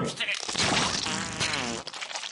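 A voice making a wavering, buzzy sound with a trembling pitch, lasting a little over a second from about half a second in, then breaking off.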